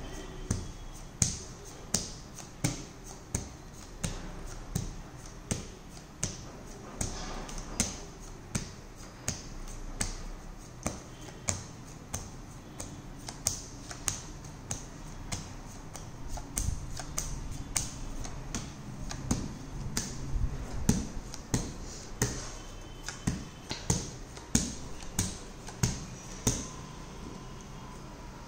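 Playing cards dealt one at a time off a deck onto a leather ottoman into piles: a short card snap about every half second to second.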